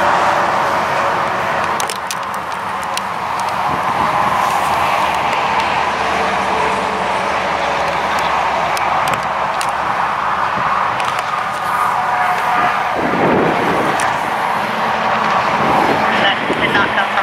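Steady road traffic noise from the interstate, with a vehicle passing close by near the end.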